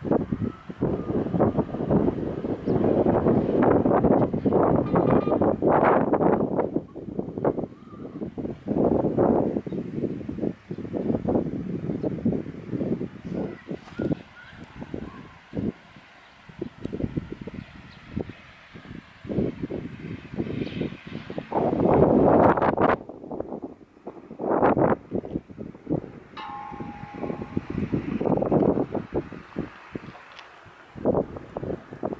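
Gusty wind buffeting the camera's microphone in loud, irregular rushes with short lulls between them. Near the end a brief steady tone sounds faintly.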